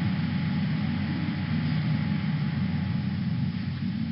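Steady low rumble with a hiss and a faint hum, unchanging and without distinct events: background noise of the recording.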